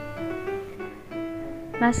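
Background music: a slow piano melody of single held notes, each ringing on before the next.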